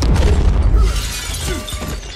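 Film sound effect of an explosion with shattering glass: a sudden loud blast with deep rumble and breaking debris, loudest in the first second and then dying down.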